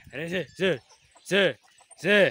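A man's voice calling calves with short, repeated sing-song "vem" calls, each rising and falling in pitch, about four or five in quick, uneven succession.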